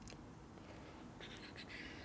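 Faint clicks and scratchy rubbing from hand-fitting the pin and cable end into a chrome motorcycle clutch lever, with the scratching strongest in the second half.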